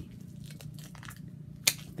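Fingernails picking and peeling at the plastic wrapping on a hardcover book: faint scratchy crinkling, with one sharp crackle near the end.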